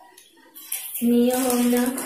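Metal jhumka earrings with small dangling bell charms clinking and jingling as they are handled, starting about half a second in. From about a second in, a steady held tone sounds over the jingling and is the loudest thing heard.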